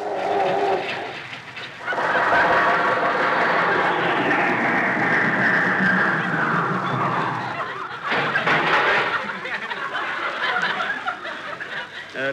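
Comic radio sound effect of an old car failing to start, a Maxwell as the show's running gag has it: sputtering, coughing and wheezing engine noises. A long, loud wheeze falls in pitch through the middle, then more ragged sputtering follows.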